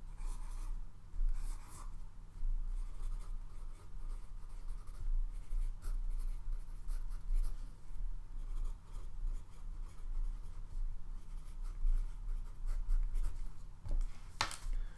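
Sheets of paper being handled and rustled close to the microphone, in irregular soft scratches and rustles over a steady low electrical hum.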